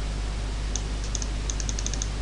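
Light computer keyboard clicks over a steady hiss and low hum from the recording. A few scattered taps come around the middle, then a quick run of about six in the last half second.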